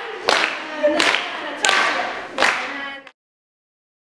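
A group of voices singing a dance tune with hand claps in time, roughly one clap every three-quarters of a second. The sound cuts off suddenly about three seconds in.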